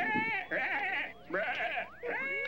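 Overlapping cartoon soundtracks: high-pitched, wavering character voices or bleat-like calls, three short ones in quick succession.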